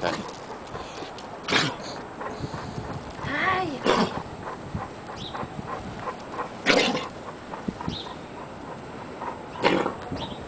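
A congested boxer coughing: four short, harsh coughs spaced about two and a half to three seconds apart, the sign of a respiratory infection.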